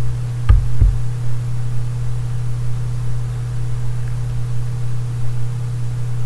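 Steady low electrical hum on the recording, with two short low thumps close together about half a second in.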